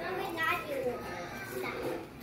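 Children's voices, indistinct chatter.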